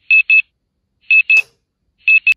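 Electronic alarm clock beeping: a high, steady-pitched double beep repeating about once a second, sounding the wake-up alarm.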